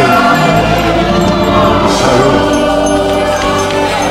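Gospel music from a church choir and band: voices singing over held, sustained chords.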